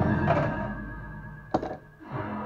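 Pinball game music from the Getaway: High Speed II machine's PinSound speakers fading down, then a single sharp mechanical thunk from the machine about one and a half seconds in.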